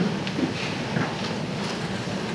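Steady hiss of room noise in a hall, with a few faint short knocks.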